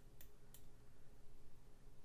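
Two quick computer mouse clicks, close together near the start, over a faint low background hum.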